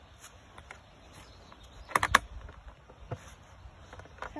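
Plastic lid of a Greenstrike Auto Preventer mosquito trap being lined up and pressed onto the unit: a quick cluster of sharp plastic clicks and knocks about two seconds in, then one more click about a second later.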